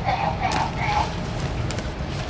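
Leafy greens being snapped off and gathered by hand, with one sharp snap about half a second in, over a steady low rumble and a faint voice.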